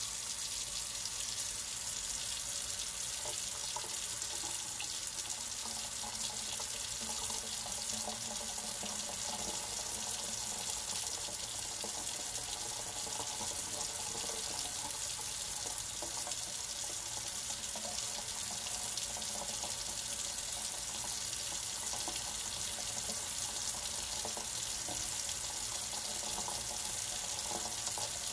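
Kitchen faucet running steadily into a stainless steel sink, the stream splashing over a fountain pen and hands as the pen is rinsed clean of ink.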